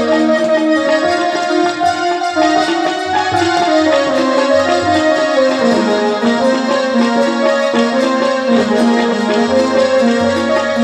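Electronic keyboard playing a held, winding melody over a repeating low beat, at steady loudness throughout.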